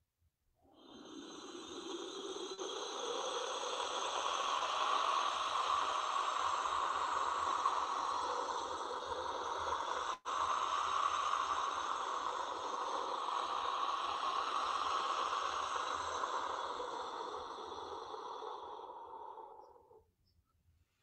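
Fired-clay wind whistle blown in a long breathy whoosh like wind. It swells in about a second in, holds steady apart from a momentary break about halfway through, and fades away near the end.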